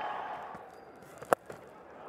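A single sharp crack of a cricket bat striking the ball cleanly for a six, about a second and a quarter in.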